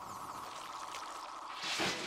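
A steady hiss from the anime's soundtrack, growing louder near the end.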